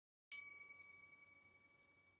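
A single bright chime struck once, about a third of a second in, as a logo sound effect. Several clear high tones ring on and fade out over about a second and a half.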